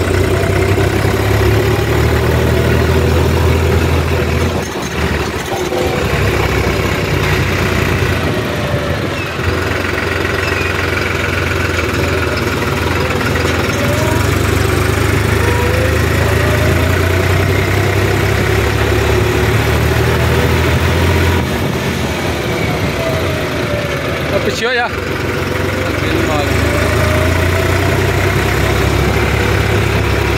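New Holland 3630 tractor's three-cylinder diesel engine running under way, heard from the driver's seat. It runs steadily, with the throttle easing off briefly a couple of times.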